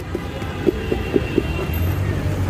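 A spoon knocking against the rim of a plastic mixing bowl about five times in quick succession as jhal muri (spiced puffed rice) is tapped out onto foil, over a steady low street rumble.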